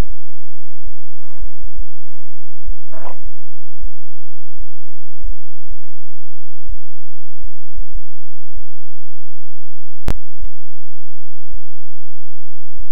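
Soft, low thumps at irregular intervals, about one or two a second, with a brief faint rasp about three seconds in and a single sharp click about ten seconds in.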